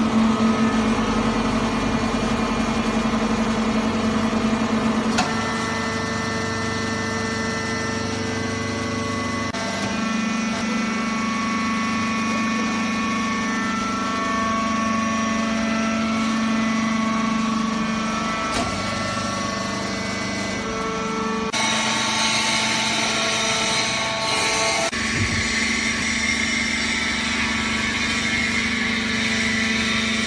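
Hydraulic baling press running: a steady machine hum from its hydraulic pump unit, whose tones change in pitch and strength every few seconds as the load shifts. A harsher hiss joins it about two-thirds of the way in.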